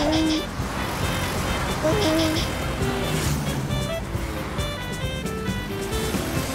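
Cartoon traffic noise, a steady rumble of engines, under background music, with short wordless vocal squeals from a character.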